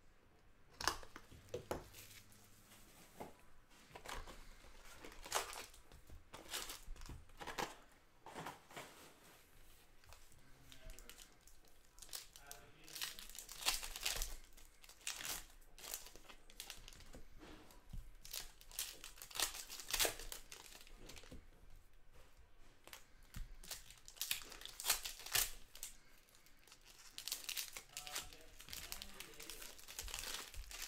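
Foil-wrapped trading-card packs being torn open and their wrappers crinkled, in irregular crackly bursts, as the hockey cards are pulled out of a freshly opened hobby box.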